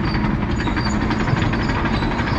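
Caterpillar 953C track loader running steadily under power as it travels on its steel tracks, the diesel engine hum under a dense, continuous clatter of the track chains.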